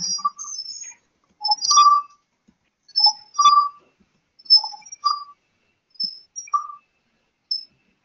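A series of short, high whistle-like chirps, about eight in all, roughly one every second, with dead silence between them.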